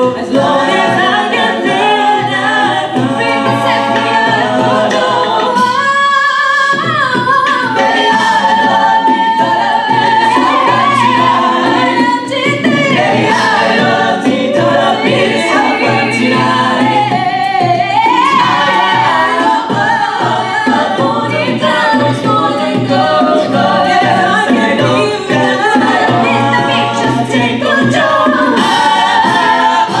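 A six-voice mixed a cappella group singing live through microphones: a lead voice over sustained backing harmonies and a sung bass line. The low voices drop out briefly about six seconds in, then come back.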